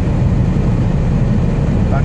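Steady low drone of a Scania R440 truck's diesel engine with road noise, heard inside the cab while cruising on the highway.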